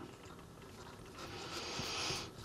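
Nylon paracord rubbing and sliding through a cobra knot as it is pulled tight: a soft rasp that grows louder over the second half.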